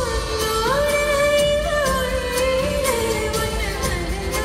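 Live band with a female singer holding long notes that slide from one pitch to the next, in a Tamil film song played through arena loudspeakers and heard from the stands.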